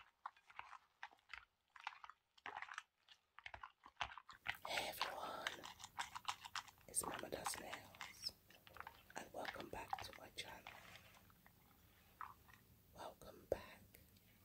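Close-miked, irregular crisp clicks, taps and crackles of small objects being handled, busier from about four seconds in.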